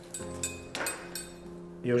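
A few light metallic clinks from the buckles and clips of a leather double camera strap as it is handled, over soft background music.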